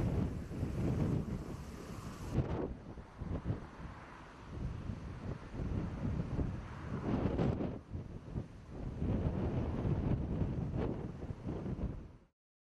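Wind buffeting an outdoor microphone, an uneven low rumble of noise that changes abruptly twice, about two and a half and seven and a half seconds in.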